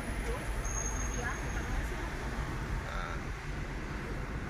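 Steady low rumble of a car's engine and tyres heard from inside the cabin while driving on a city road.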